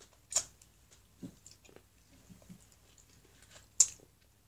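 A child chewing soft gummy candy, with scattered short wet mouth clicks and small handling noises. The two sharpest clicks come about a third of a second in and just before the end.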